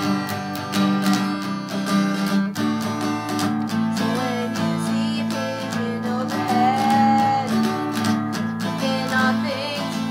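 A song on strummed acoustic guitar, with a voice singing a melody over the chords.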